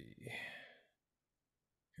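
A man sighs briefly, under a second, and then there is silence.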